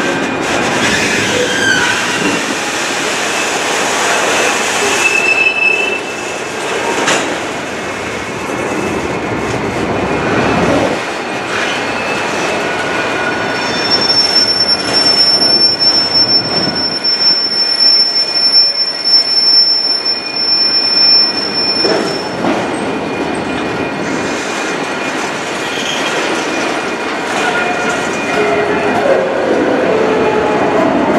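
Freight train of autorack cars rolling past, with a steady rumble and clatter of steel wheels on the rails. A high, thin steel-wheel squeal sets in about halfway through and holds for several seconds, and shorter squeals come earlier.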